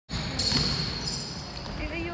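A basketball bouncing on a hardwood gym floor during a game, with players' voices in the hall.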